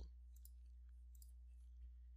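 Near silence: a few faint computer-mouse clicks over a low steady hum.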